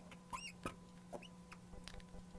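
Marker tip squeaking on a glass lightboard while writing: a few short, faint chirps that rise and fall in pitch, with light taps of the tip on the glass. A faint steady electrical hum lies underneath.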